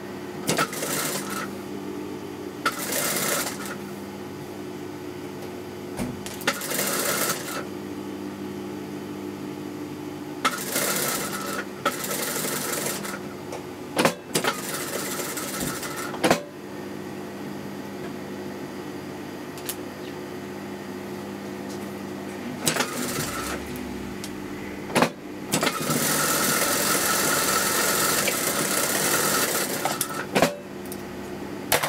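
Toyota sewing machine stitching a bias-cut strip onto a neckline in short runs of one to four seconds, the longest near the end, stopping between runs while the fabric is repositioned. A steady hum carries on between the runs, with a few sharp clicks.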